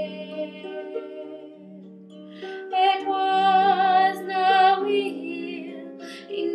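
Plucked harp accompaniment with a woman singing a slow folk ballad. Her held note fades over the first second or two, leaving the low harp notes ringing, and she begins a new phrase with vibrato about two and a half seconds in.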